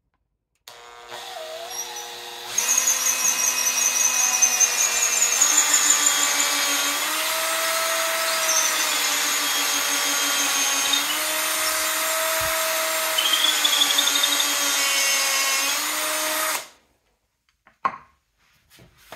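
Makita 18 V cordless drill boring into a block of plywood with a twist bit: the motor starts at low speed for about two seconds, then runs at full speed for about fourteen seconds, its whine shifting in pitch as the bit loads and frees in the wood, and stops. A short click follows near the end.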